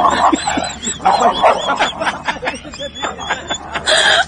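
People laughing in bursts.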